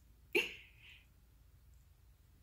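A dog gives one short bark about a third of a second in, fading quickly.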